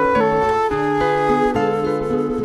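Instrumental milonga: a concert flute plays a melody of held notes over plucked nylon-string guitar.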